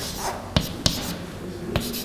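Chalk writing on a blackboard: a few sharp taps of the chalk against the board among faint scratching strokes.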